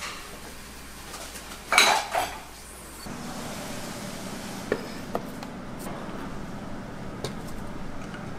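Ceramic dishes clattering: one loud clatter about two seconds in, then a steady low hum with a few light clinks as bowls are set down on a table.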